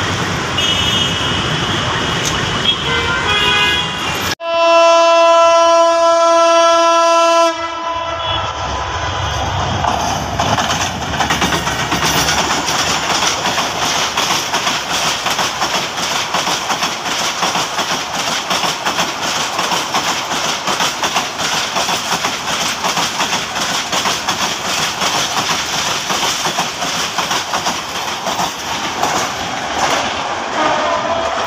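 A Bangladesh Railway diesel locomotive's horn sounds one loud, steady blast about four seconds in, lasting about three seconds. Then the passenger train runs past close by, a steady rumble with the clatter of its wheels over the rail joints.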